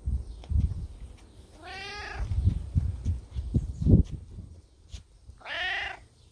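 Domestic cat meowing twice, each meow about half a second long, rising then falling in pitch: one about two seconds in and one near the end. Low thumps and rumble on the microphone come in between.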